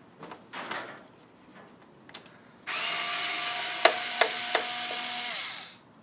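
Black & Decker power drill driving screws out of an LCD monitor's back for about three seconds, a steady motor whine with a few sharp clicks partway through, winding down at the end. Light handling clicks come before it.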